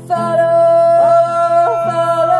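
Singing with a strummed acoustic classical guitar: one long note held from just after the start, over the guitar's chords.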